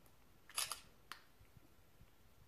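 Camera shutter firing: a quick cluster of sharp clicks about half a second in, then a single click about a second in.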